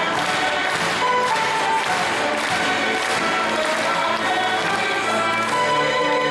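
Live symphony orchestra with violins and woodwinds playing a lively tune with a steady beat.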